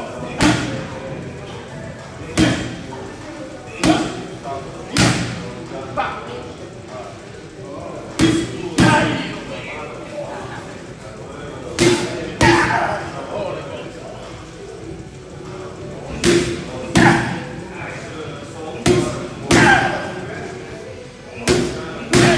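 Boxing gloves striking focus mitts: sharp slaps every second or two, some coming in quick pairs as one-two combinations.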